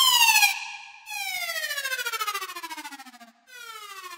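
Software synthesizer preset being auditioned: a series of electronic tones, each sliding steadily down in pitch, siren-like. A short bright one comes first, then a longer fluttering sweep from about a second in, and another starts near the end.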